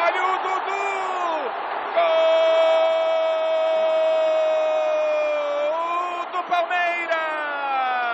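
A Brazilian football narrator's drawn-out goal cry: after a couple of short excited shouts, one long 'gol' is held on a high, steady pitch for about six seconds and falls away at the end. Stadium crowd noise runs underneath.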